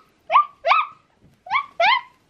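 A puppy whining: four short, rising cries in two quick pairs about a second apart.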